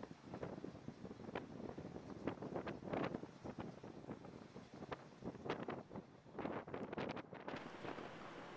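Wind buffeting an outdoor microphone in uneven gusts.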